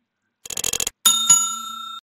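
Subscribe-button animation sound effects: a short burst of rapid clicks, then a bright bell ding, struck a second time just after the first, ringing on and slowly fading.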